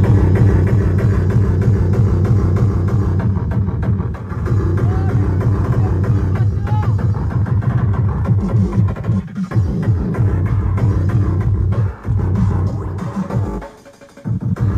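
Loud tekno (free-party hardtek) played through a rave sound system's speaker stack, recorded close up, with a heavy, fast, distorted bass kick driving the track.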